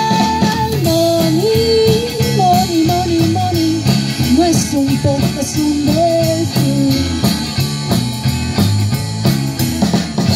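Live swing band playing an instrumental passage between verses: a melodic lead line over guitar and a steady beat, with a brief vocal sound about halfway through.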